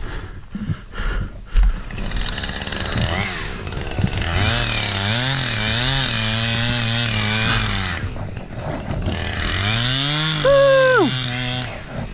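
Small two-stroke engine revving, its pitch wavering up and down from about four seconds in, then climbing in one last rev that drops off sharply near the end.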